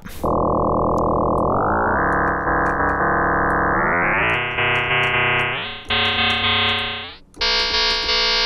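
Absynth 5 sine-wave oscillator being frequency-modulated by a second sine wave at audio rate, heard as one steady, complex tone rather than a pitch moving up and down. As the modulator is turned up in steps, to 231 times a second, the tone gets brighter in jumps, with brief sliding pitches between the steps and a short dip in level just before the last jump.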